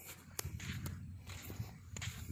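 Footsteps on damp river sand, a step roughly every half second, with a low rumble on the microphone.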